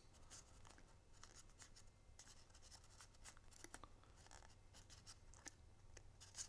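Very faint paper rustling with scattered small crinkles and ticks as a fringed cardstock strip is rolled tightly around a pencil.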